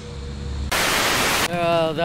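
A low hum that cuts off, then a burst of static-like hiss, just under a second long and starting and stopping sharply, followed by a man starting to speak.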